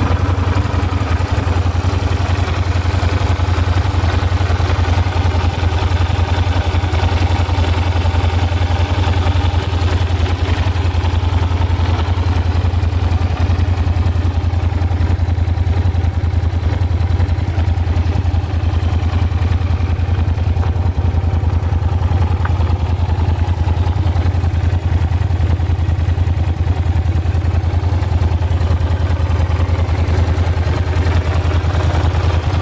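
Yamaha TDM900's 900 cc parallel-twin engine idling steadily.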